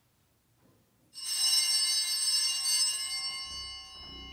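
A bell struck once about a second in, ringing with many high, steady tones that slowly fade: the bell rung as the priest enters to begin Mass.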